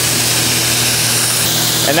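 Steady loud hiss over a low, even hum, from the compressed-air and welding-machine setup used for air arc gouging.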